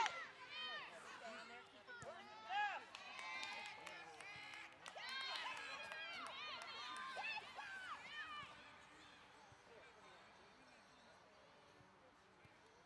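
Distant, high-pitched voices shouting and calling out, several overlapping. They die away after about eight seconds, leaving only faint outdoor background.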